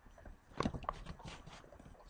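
Computer keyboard typing: an irregular run of key clicks starting about half a second in.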